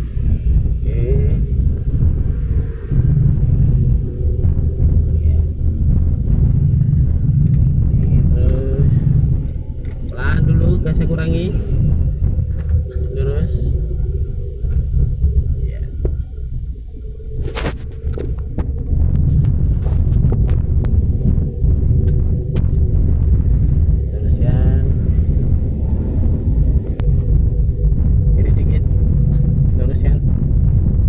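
Steady low rumble of a car's engine and tyres on the road, heard inside the cabin while driving. Faint snatches of voices come through now and then, and there is a single sharp click about halfway through.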